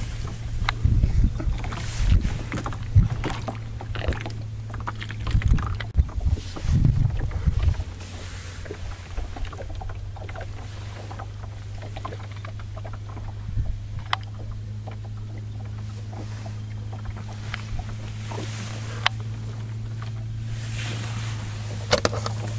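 Steady low motor hum of a motorboat engine running on the lake, with irregular bumps and knocks during the first several seconds.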